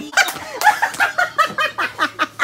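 Loud laughter in rapid, short bursts of about five a second.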